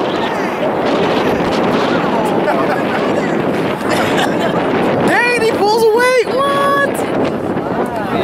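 Spectators cheering and shouting, many voices overlapping. About five seconds in, one voice yells loudly, its pitch swinging up and down, then holds a long steady note for about half a second.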